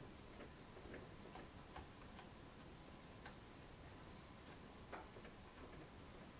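Near silence with faint, irregular small clicks and scratches of a hand sculpting tool working plasticine clay, over a faint steady hum.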